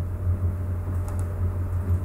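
Steady low hum in the recording, with a couple of faint mouse clicks about a second in.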